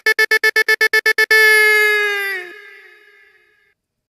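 A single held, pitched note of the DJ's outro effect, chopped into a rapid stutter of about eight pulses a second, then held and fading away to nothing past the middle.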